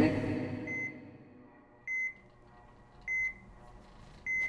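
Medical patient monitor beeping steadily: one short high tone about every 1.2 seconds, like a slow heartbeat.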